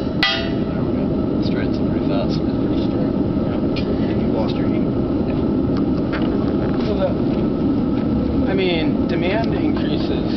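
A forge running with a steady roar, and a single ringing hammer blow on hot metal at the anvil just after the start. Faint voices come in near the end.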